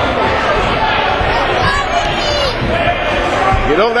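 Gymnasium crowd noise during a wrestling match: many spectators talking and calling out at once, with a few dull thumps at irregular moments. A man's voice starts shouting near the end.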